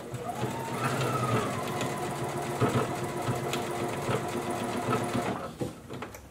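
Brother sewing machine running steadily as it stitches black sequin fabric. The motor speeds up about a second in, then stops shortly before the end.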